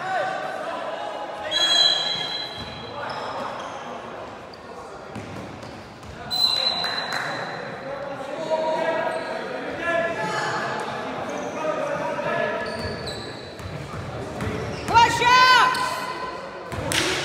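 Basketball bouncing on an indoor hardwood-style court during play, with players' voices calling out and brief high squeals, all echoing in a large sports hall.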